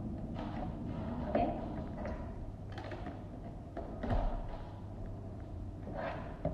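A few handling knocks as a plastic touchless soap dispenser is turned upright and set down on a wooden table, with a heavier dull thud about four seconds in.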